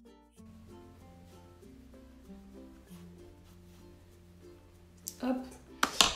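Background music of short plucked-string notes over a steady bass line, moving into a new phrase just after the start. A woman's voice comes in near the end, louder than the music.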